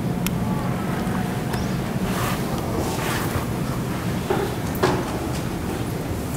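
Recorded ocean surf and wind, steady and even, played over room loudspeakers as the opening of a water-song video, with a low steady hum under it; no singing yet.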